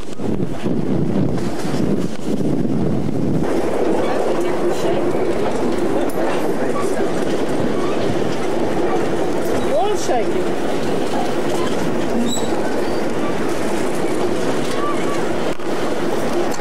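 A train running along the track, heard from aboard a carriage: a steady rumble of wheels on the rails, with a short squeal of changing pitch about ten seconds in.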